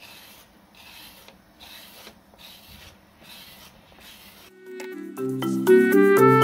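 Rubber kidney scraping the inside wall of a freshly coiled clay bowl in about six short strokes, a little under a second apart, shaving off thin layers of clay. Background music with mallet-like notes comes in near the end and grows louder, taking over.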